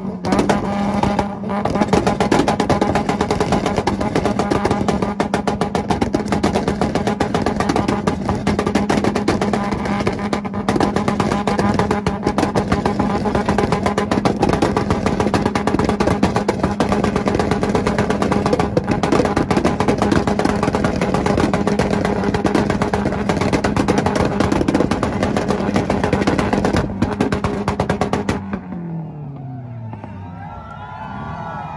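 Toyota Supra's 2JZ straight-six held on a two-step launch limiter, one steady high-revving note with rapid popping and crackling from the exhaust. Near the end the revs fall away.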